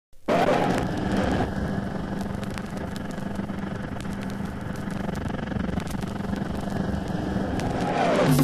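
A steady whooshing noise drone with a low hum, starting abruptly, that opens a rock track before the drums come in, sounding like an engine or machine running.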